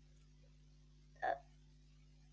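One brief throaty voice-like sound, under a quarter of a second, about a second and a quarter in, over a faint steady hum.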